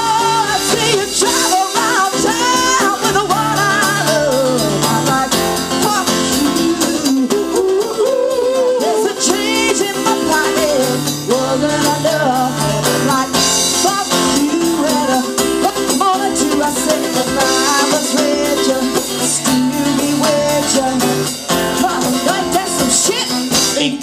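Live band playing through a PA: acoustic-electric guitar and drum kit, with a woman singing a melodic line that the recogniser catches no words in.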